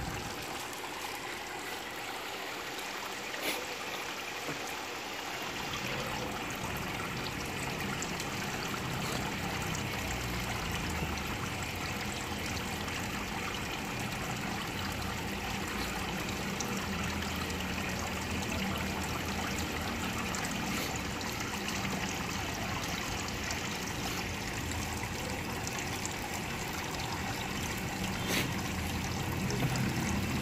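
Water trickling steadily into an aquaponics fish tank, with a couple of faint clicks.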